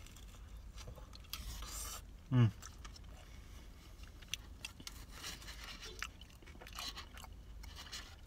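A person chewing a mouthful of pizza slice with crisp-bottomed crust, faint crunching and mouth sounds, and a short appreciative 'mmm' about two seconds in.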